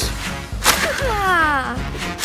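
Cartoon impact sound effect of a truck hitting a tree: a sharp whack about two-thirds of a second in, followed by a tone sliding down in pitch, over background music.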